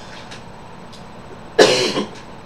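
A single short cough about one and a half seconds in, after a quiet stretch.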